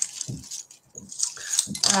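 Light jingling and clinking of small metal jewellery, a locket and chain, being handled in the hands. A voice begins just before the end.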